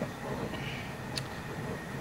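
Steady roar of a propane burner running under the lead-melting pot, with one faint click about a second in.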